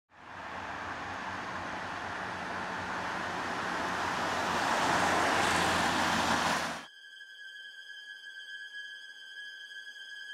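A car passing close on a wet road: tyre hiss and engine noise swell to their loudest about six seconds in, then cut off abruptly. A thin, steady high electronic tone follows.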